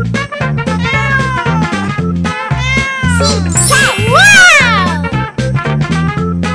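A cat meowing a few times over upbeat background music with a steady bass line; the loudest and longest meow comes about four seconds in.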